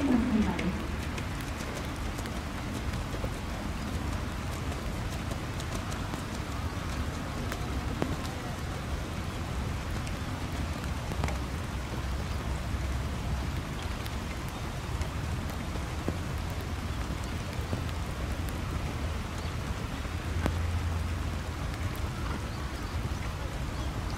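Steady rain falling, an even continuous hiss with a low rumble underneath.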